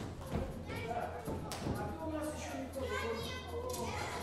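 Children's voices and chatter in a hall, with a few wooden knocks in the first half and a steady low hum underneath.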